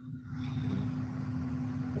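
Steady low hum and rumble of background noise picked up by a video-call participant's open microphone, with one steady hum tone held throughout.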